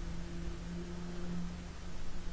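Low steady hum of room tone, with no speech.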